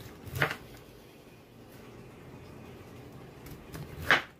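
Kitchen knife cutting through a broccoli stalk on a plastic cutting board: one sharp crunch about half a second in, then a few small cutting sounds near the end.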